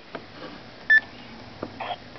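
A single short electronic beep about a second in, one steady high tone over low background noise.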